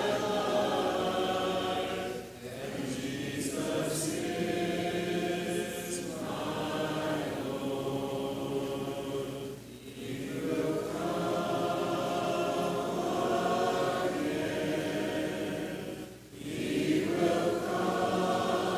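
A congregation singing a hymn a cappella, in long held phrases with short breaks between lines about every six or seven seconds.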